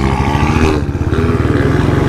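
A modified BMW sedan's aftermarket exhaust and a Royal Enfield Bullet 350's single-cylinder engine running together at low speed in traffic. They make a steady low engine note with a fast pulsing underneath.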